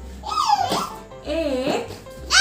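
A young child's wordless vocal sounds, high and gliding up and down in pitch, twice, over background music with a low bass line.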